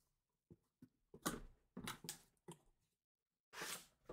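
Cardboard box flaps being opened by hand and a mini helmet in a plastic display case drawn out: a series of faint short scuffs and rustles, with a longer sliding rustle near the end.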